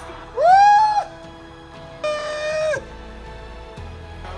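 Two long, high held vocal calls, the first rising into the note and the second level, about a second apart, over quiet background music.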